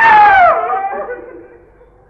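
A man's chanting voice holds the long final note of a sung verse. The note slides down in pitch and dies away about a second and a half in.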